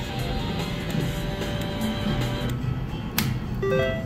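Top Dollar three-reel slot machine spinning its reels to an electronic spin tune, with a sharp click a little after three seconds as the reels stop, followed by a few short beeping tones.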